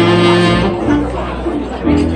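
Live saxophone and keyboard jazz: the saxophone holds a note at the start, drops out for about a second while the keyboard plays on, and comes back in near the end.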